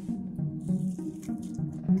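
Crunching and chewing as a bite is taken from a Taco Bell Crunchwrap, whose crisp tostada shell crackles, in the first second or so. Quiet background music with steady low notes runs underneath.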